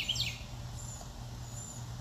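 Birds chirping: a quick run of repeated chirps dies away in the first moment, then a few faint, short, high chirps follow, over a steady low hum.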